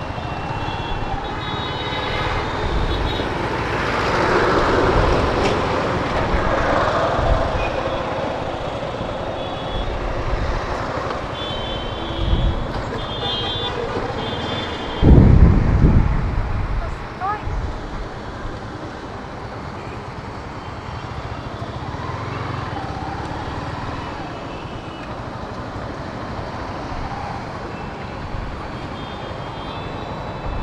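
Busy bus-stand traffic: buses and other vehicles running close by, with horns tooting in short tones and voices in the background. A loud, low rumble about halfway through fades away over a second or so.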